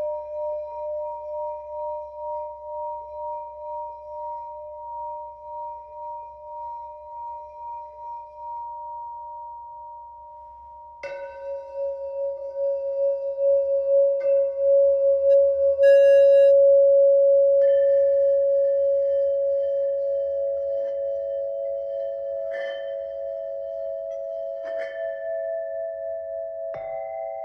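Antique Mani singing bowls struck with a wooden mallet, each ringing with a slow wavering beat and a long fading tone. About eleven seconds in, a hand-held bowl is struck and then rubbed around its rim with the mallet, so that its tone swells for several seconds. Further bowls are struck over it.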